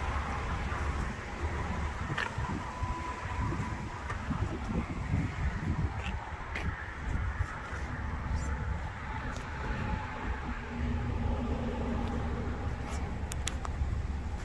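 Outdoor ambience: a steady low rumble on a handheld phone's microphone, with a few faint clicks scattered through.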